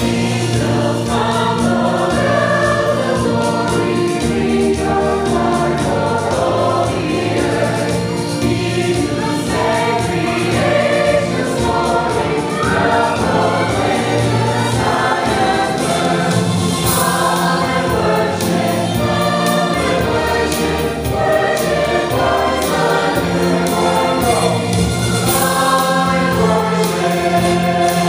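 Mixed choir of men's and women's voices singing together continuously.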